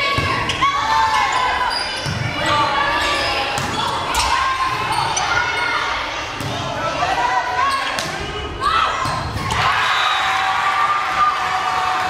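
Volleyball rally in a gymnasium: the ball struck by hands roughly every two seconds, with players and spectators shouting and calling over it.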